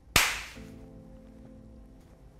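A single sharp cinematic hit sound effect for a title reveal: a crack with a bright hissing tail that fades over about half a second over a low rumble, then a held musical chord.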